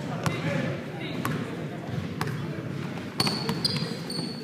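Basketball dribbled on a hardwood gym floor: a bounce about once a second, coming faster near the end, with short high sneaker squeaks in the last second, over a murmur of voices in the echoing gym.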